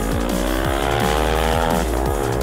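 A racing motorcycle's engine accelerating hard past, its note climbing steadily, then dipping briefly near the end before rising again, under electronic drum-and-bass music.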